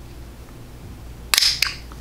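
A sharp plastic snap a little past halfway through, followed by a smaller click: the lift tab of a loose-powder jar's sifter seal popping up as it is pried open.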